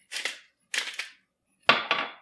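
Hand-held pepper grinder cracking black peppercorns in three short grinding bursts, the last one the loudest.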